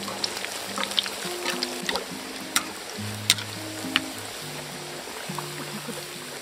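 Soft background music of slow held notes. Under it are the hiss and scattered crackles of kolduny deep-frying in oil in a cast-iron kazan, with a couple of sharper pops in the middle.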